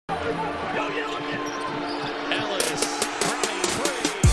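A basketball dribbled hard on a hardwood court during a fast break, with sharp bounces coming from a little past halfway, over a busy arena noise bed.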